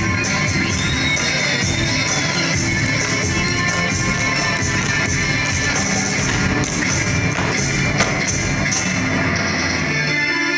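Live instrumental band music with cello, saxophone and guitar, overlaid by the sharp, rapid taps of step dancers' shoes striking the stage, with one louder strike about eight seconds in.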